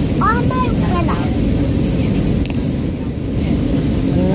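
Steady low rumble of airliner cabin noise, with a young girl's high voice briefly in the first second.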